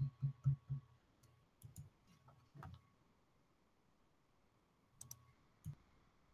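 Low pulsing thumps, about four a second, stop about a second in. After them come a few faint, sharp clicks scattered over the quiet.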